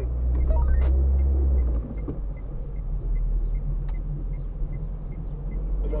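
Inside a moving car: low engine and road rumble, heavier and louder for the first two seconds, then steadier. A faint, even ticking runs underneath from about two seconds in.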